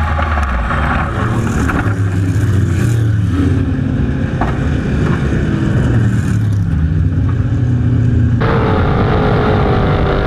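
Onboard sound of a USAC Silver Crown dirt champ car's V8 racing engine at speed with wind rush, the engine note rising and falling as the throttle is worked through the turns. About eight and a half seconds in the sound switches abruptly to a higher, wavering engine whine.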